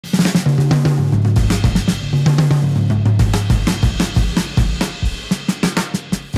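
Live jazz: a drum kit played busily on snare, hi-hat and cymbals, over a bass line of held low notes.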